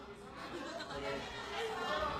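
Quiet, indistinct chatter of several voices in a room.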